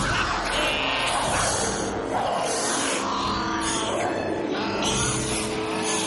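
Film soundtrack: held music notes under a busy run of loud, noisy sound effects that swell about a second in, midway and near the end.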